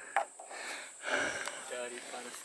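Quiet breathing close to the microphone, with a brief faint voice near the end.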